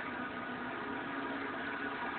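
Steady background hum and hiss with no distinct event.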